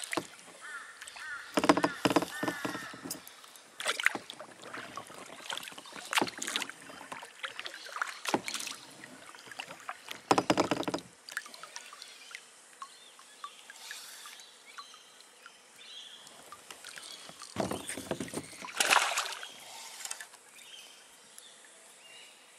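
Water splashing and slopping around a kayak in irregular bursts, a few seconds apart, with quieter stretches between, as the paddle and the boat move on a creek.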